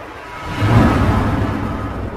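Cinematic intro sound effect: a deep rumbling whoosh that swells up about half a second in, then slowly fades.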